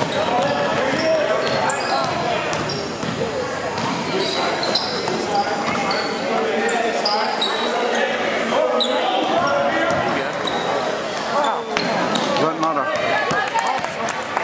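Basketball game in a gym: overlapping voices of spectators and players, a basketball bouncing on the hardwood floor, and short high squeaks of sneakers on the court.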